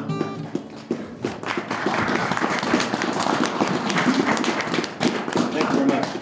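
The last acoustic guitar chord rings out, then a small audience applauds from about a second in.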